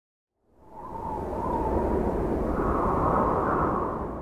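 Intro sound effect: a swell of rushing noise with a deep rumble beneath and a faint wavering tone, rising out of silence about half a second in and then holding steady.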